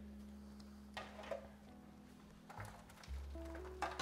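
Quiet background music with low, sustained bass tones and a few soft held notes near the end. There is a faint short tap about a second in.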